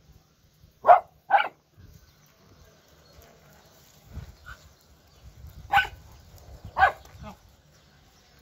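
Small dogs barking: two sharp barks close together about a second in, then two more about a second apart near the end.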